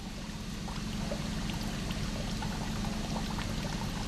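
Tap water running into a sink: a steady splashing hiss with faint droplet ticks, over a low steady hum.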